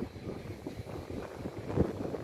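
Wind on the microphone: a low, uneven noise with no clear pitch.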